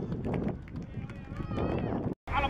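Youth football players and onlookers shouting and calling out on the pitch, short raised voices rising and falling in pitch, over a steady low rumble.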